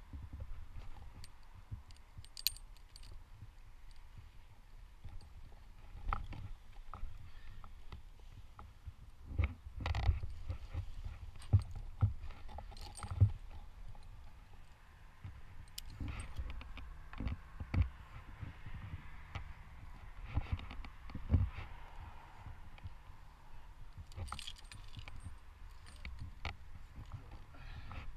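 Metal climbing hardware clinking and rope rustling as a tree climber handles his rope system, with irregular knocks and clicks, the loudest about a third of the way in.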